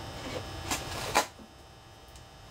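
Adhesive tape being pulled off its roll and applied to a Depron foam tube: a scratchy peel with two short, sharp snaps a little under and a little over a second in.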